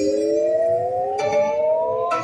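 5 Dragons Rapid slot machine's electronic sound effect for the mystery feature pick: a synth tone rising slowly and steadily in pitch, with a bright shimmer joining about a second in.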